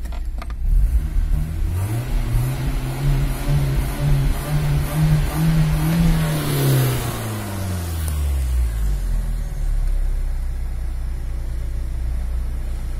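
Car engine revved up from idle and held at raised revs for several seconds, its pitch creeping higher, then falling back and settling into a steady idle about nine seconds in.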